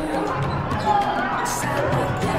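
A futsal ball being kicked and bouncing on the court during play, with voices and music in the background.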